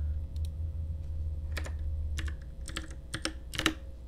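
Computer keyboard keystrokes: a short, irregular run of taps as a number is typed into a program's table. A low steady hum sits underneath, dropping in level a little over halfway through.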